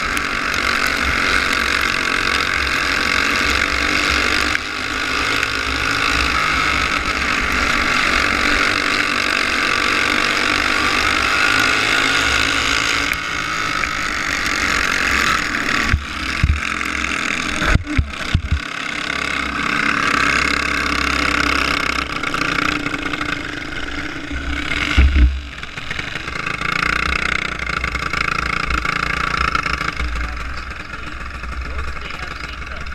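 Racing kart engine running hard through the laps, heard up close on the kart with wind on the microphone, its revs rising and falling through the corners. A few sharp knocks stand out, two close together about 18 seconds in and one about 25 seconds in, and the engine drops away near the end as the kart slows.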